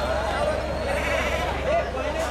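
Bleating from tethered sheep and goats, strongest about a second in, over the steady chatter of a crowd of voices.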